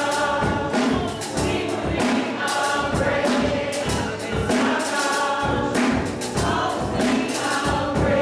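Church choir singing a gospel song, backed by keyboard and drums, with a steady beat of about two strokes a second.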